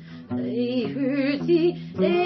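A woman singing a slow song with vibrato over guitar accompaniment, her phrase starting about a quarter second in.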